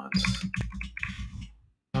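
Computer keyboard typing: a quick run of key clicks that thins out about a second and a half in.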